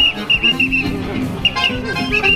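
Accordion music playing a lively tune with quick, short high notes over held chords.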